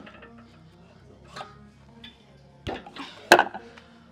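Steel weight plates clanking as they are loaded onto a hack squat machine's plate horns: a light knock, then a clatter and one sharp metal clank about three seconds in. Quiet background music plays underneath.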